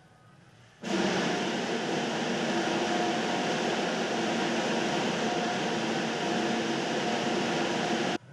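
Crowd applause, dense and steady, starting suddenly about a second in and cut off abruptly at the end.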